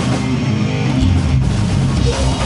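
Live heavy band playing, led by an electric guitar riff, with a heavier low end coming in about a second in.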